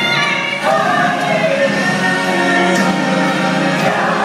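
Southern gospel vocal group, men and women, singing a held note in close harmony with accompaniment, then moving to a new chord about half a second in.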